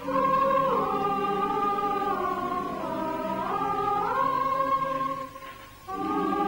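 Film title music: a choir holding slow chords that slide from note to note, breaking off briefly near the end.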